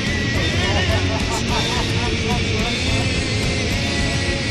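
City bus interior with steady engine and road rumble, and a man's repeated laughter, stifled behind his hand, over it. Music plays underneath.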